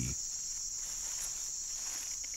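Night insect chorus: one steady, high-pitched trilling drone.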